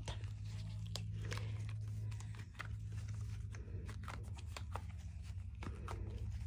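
Round silicone mold being flexed and peeled off a cured epoxy resin tray: faint scattered crackles and ticks as the silicone releases, over a steady low hum.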